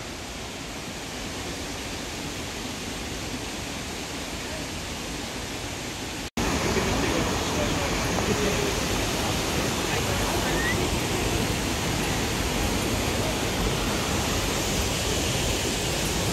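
Steady rushing noise of Pistyll Rhaeadr waterfall and the rocky stream below it. It breaks off for an instant about six seconds in and comes back louder.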